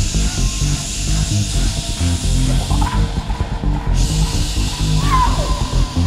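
Electronic dance music played live by an electronic band, with a pulsing bass-heavy beat. A high hissing layer drops out for a couple of seconds in the middle, and a high tone slides up and down about halfway through and again near the end.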